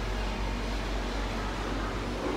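Steady low hum and even noise from inside a gondola lift cabin as it moves through the cable-car station.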